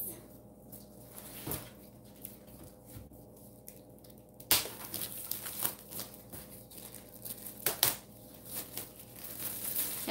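Rustling and crinkling with scattered knocks as a painting canvas is fetched and handled, with one sharper knock about four and a half seconds in.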